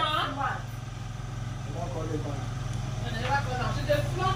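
A person speaking briefly at the start and again more faintly later, over a steady low hum.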